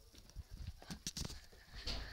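A quick run of soft knocks and thumps, several within about a second, from a handheld camera being moved and handled.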